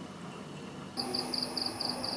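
A steady low background hiss, then about a second in night insects take over: a high chirp pulsing about four times a second over a steady, very high continuous trill.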